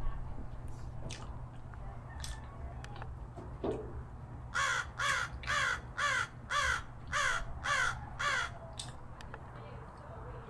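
A bird calling repeatedly about halfway through: a series of about eight calls, roughly two a second, over a low steady hum.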